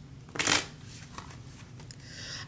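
Tarot cards being handled and shuffled: one short rustle of the cards about half a second in, then a couple of faint ticks.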